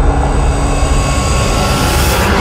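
Steady, loud rushing noise with a deep rumble underneath: the sound effect of an animated logo sting.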